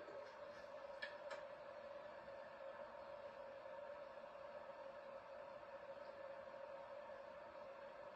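Near silence: a faint steady whine, with two faint ticks about a second in.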